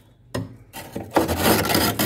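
Flaky, dry freezer frost being scraped off the freezer ceiling with a metal spoon: a short scrape about a third of a second in, then a long, loud scrape from just before the middle to the end.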